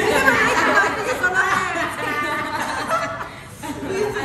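A young woman's voice, talking and laughing in a playful, lively tone, with a short pause a little after three seconds.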